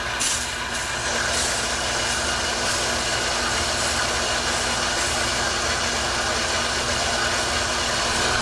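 Electric soft wash booster pump running steadily while water hisses out of the spray wand, pushing air out of the line.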